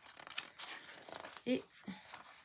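Sheets of patterned paper in a bound pad being leafed through, the pages rustling as they turn, with a brief murmur of voice near the end.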